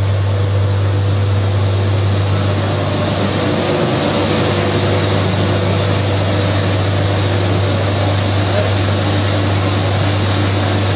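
Tuff Tread HS Elite high-speed treadmill's motor and belt running steadily with no runner on the belt: a loud, even low hum with a few faint higher steady tones.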